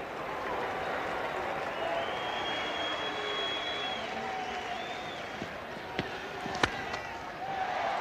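Cricket ground crowd applauding and calling out after a boundary, a steady wash of many voices. Near the end, a sharp crack of a cricket bat striking the ball for the next shot.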